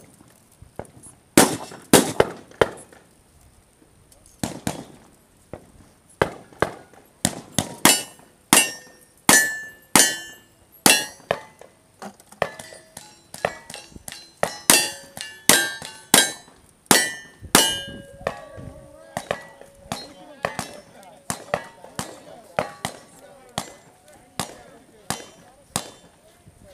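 A long string of gunshots fired in quick succession during a cowboy action shooting stage, with steel targets ringing after many of the hits. The shots start about a second and a half in, come fastest in the middle, and grow weaker and more spaced in the last third.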